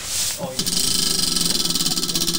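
Prize wheel spun by hand: a short swish as it is pushed, then rapid, even clicking of its pointer against the pegs as the wheel whirls.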